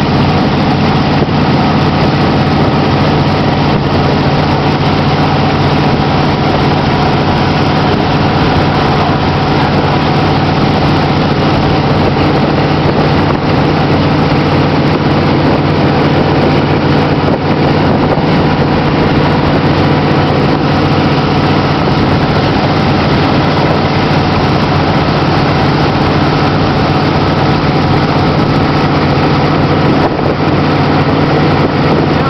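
Tow boat's engine running steadily at constant pulling speed, heard from aboard, over an even rush of water and wind.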